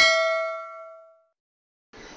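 A bright bell 'ding' sound effect, the notification bell of a subscribe-button animation, ringing out with several pitched tones and fading away over about a second.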